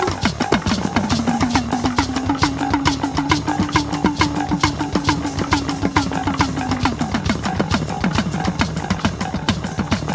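West African percussion duet played fast: hourglass talking drum struck with a curved stick, many of its strokes bending in pitch, over a hand-played drum. A low note is held for several seconds in the middle, rising slightly, then stops.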